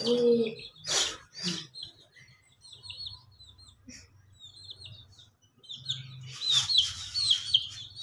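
Domestic chicks peeping: repeated short, high chirps, each falling in pitch, a few scattered ones in the middle and a louder, faster run near the end.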